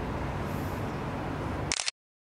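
Steady low hum and hiss of room background, then one short sharp click near the end, after which the sound cuts out to dead silence at an edit.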